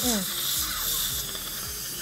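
A dental handpiece runs against a tooth with a steady high hiss from the suction and air. The tooth surface is being cleaned of debris and germs before a permanent veneer is fitted.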